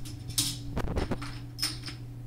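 Plastic Connect 4 checkers clattering: a disc dropped into the upright grid, then loose discs stirred in their tray near the end, two short bright clatters with a few small clicks.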